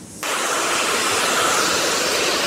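Hand-held hair dryer switched on a moment in, then running steadily with an even hiss of blown air.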